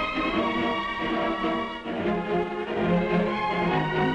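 Orchestral music: a theatre orchestra playing an overture in sustained notes, with a change of phrase about two seconds in.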